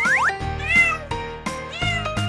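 A domestic cat meowing, two short rising-and-falling meows, over background music.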